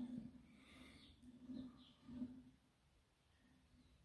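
Near silence, with a few faint, soft rubbing sounds from a hand-turned homemade turntable (a round aluminium plate on a pottery-wheel base) as it rotates under the garden-railway locomotive: one near the start, then two more about a second and a half and two seconds in.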